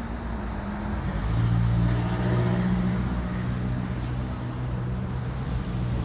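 Street traffic with a motor vehicle's engine running close by: a steady low engine hum that gets louder about a second in and holds steady.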